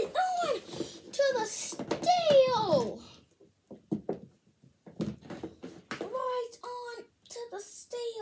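A child's voice making wordless exclamations and drawn-out vocal noises, with a few light taps in a quieter stretch in the middle as plastic wrestling figures are handled in a toy ring.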